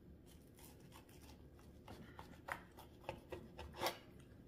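Carving knife cutting down along the breastbone of a roasted turkey breast: faint scraping with soft clicks, a few sharper ones in the second half.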